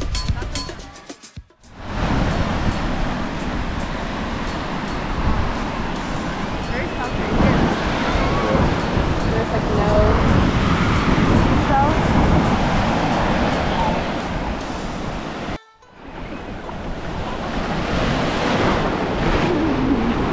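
Music ends in the first second, then ocean surf and wind buffeting the microphone, with faint voices in the background. The sound cuts out briefly about three-quarters of the way through, then the surf and wind resume.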